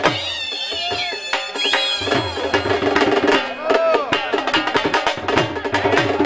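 Dhol drums beating in traditional Punjabi folk music, the strokes thinning out for the first two seconds and then coming back thick and fast under steady held notes. High sliding notes rise and fall over the music early on, with another arching one just before the middle.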